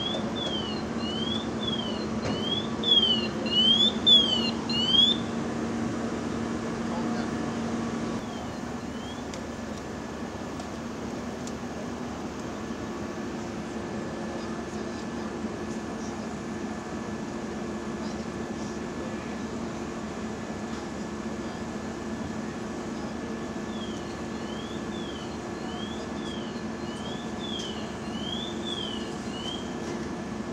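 Fire apparatus engine running steadily with a low hum. Over it, a high chirp sweeps down and up about twice a second for the first five seconds and again near the end.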